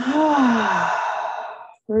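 A woman's audible, sigh-like breath, breathy with a faint voiced note that falls in pitch, fading out near the end.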